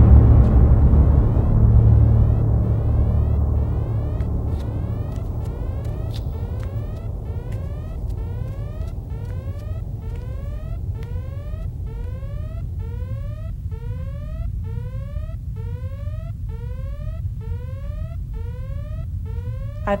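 Sci-fi film score and sound design: a deep rumble that is loud at the start and fades into a steady low drone, under a string of short rising synthesizer sweeps repeating about twice a second, with faint scattered ticks.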